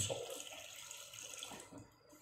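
A faint hiss from a gas burner under a simmering pot, dying away to near silence as the flame is turned down to its lowest.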